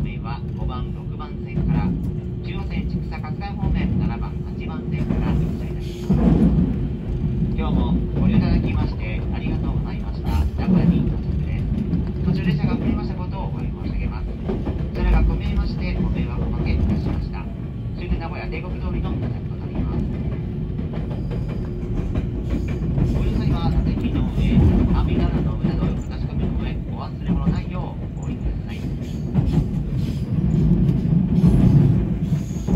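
Electric local train running, a steady low rumble heard from inside the front car, with voices over it.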